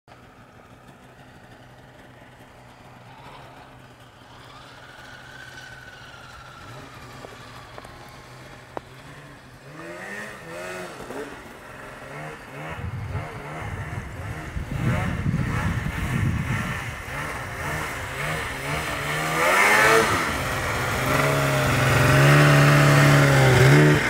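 Two-stroke snowmobile engines revving up and down as the sleds climb through deep snow, faint and distant at first and growing steadily louder as they approach. Near the end a Polaris 800 Pro-RMK passes close, loud and revving hard.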